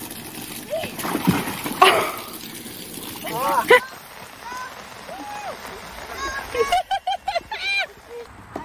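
Water splashing as a child comes down a slide into a plastic paddling pool, with a loud splash about two seconds in. After it come high-pitched shrieks, then quick bursts of laughter near the end.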